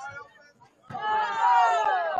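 Several spectators shouting together, starting about a second in, their voices sliding down in pitch as the shout goes on.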